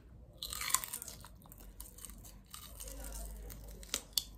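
A bite into a raw celery stalk: a crisp snap about half a second in, followed by crunchy chewing.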